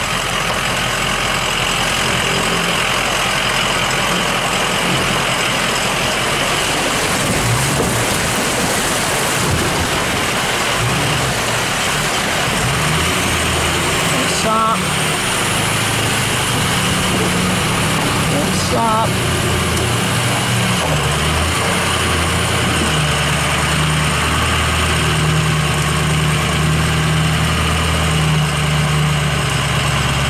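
Four-wheel-drive truck fording a creek and pulling out up the bank: water rushing and splashing around the vehicle over the steady engine. The engine's drone grows louder and steadier in the second half as the truck climbs onto dry ground.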